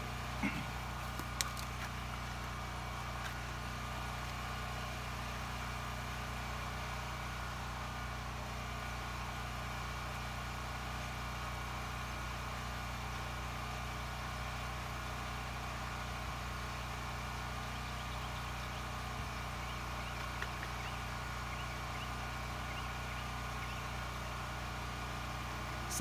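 Steady machine hum that does not change in level or pitch, with a couple of faint clicks about a second in.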